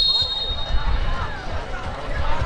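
Outdoor football match sound: a referee's whistle tone that fades out within the first second, then faint shouts from players across the pitch over a constant low rumble.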